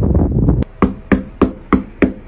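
Knuckles knocking on a front door with leaded-glass panels: about six quick, even knocks, three or four a second, each ringing briefly. They start about half a second in, after a short low rumble.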